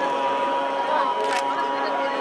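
Indistinct talking of several people in a hall, over a steady faint tone, with one sharp click about a second and a half in.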